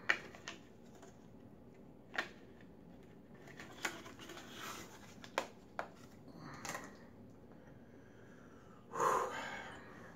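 Gloved hands handling a small plastic bag and a hot pepper: scattered light clicks and crinkles, with a short breathy noise near the end.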